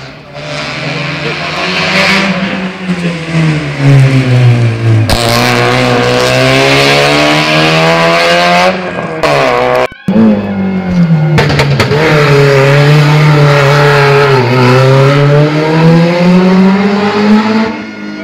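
Rally car engine running hard and loud up a hillclimb course, its pitch falling and rising in long sweeps as the car slows and accelerates. The sound breaks off for a moment about ten seconds in, then resumes.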